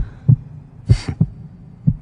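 Heartbeat sound effect: low double thumps (lub-dub) about once a second, with a brief breathy hiss about a second in.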